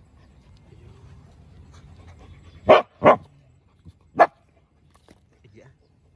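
A young Cambodian local dog barking three times, two quick barks and then one more, at a crab it has found on the ground.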